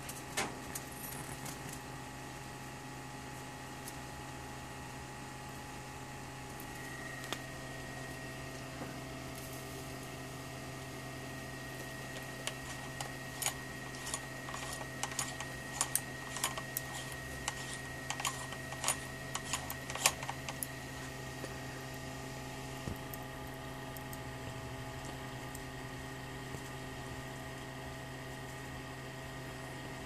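ZVS flyback driver running with a steady low electrical hum, joined by a thin high whine about seven seconds in that fades out after about twenty seconds. Through the middle stretch come irregular sharp crackles and ticks from the high-voltage arc inside the light bulb.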